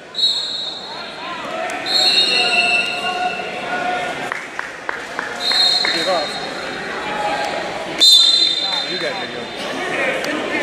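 Sports whistles blow four times in a busy gym, each a short steady high blast: just after the start, about 2 s in, about 5 s in and about 8 s in. Shouts and chatter run underneath, and a few quick knocks sound on the mat in the middle.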